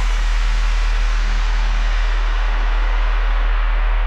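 Breakdown section of an electronic dance track: a held sub-bass note under a white-noise sweep whose treble is gradually filtered away, so the hiss grows duller as it goes.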